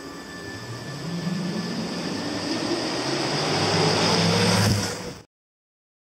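A car driving past, its rushing road noise growing louder to a peak and then cutting off abruptly about five seconds in.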